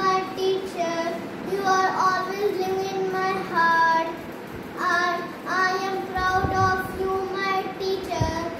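A young boy singing a Teacher's Day song solo and unaccompanied, in steady held notes with short breaks between phrases.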